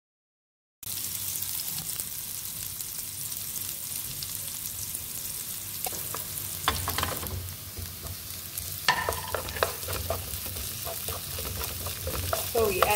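Sliced red onions sizzling in oil in a non-stick frying pan, starting after about a second of silence. A wooden spoon stirs and scrapes against the pan in short clusters about halfway through and again near the end.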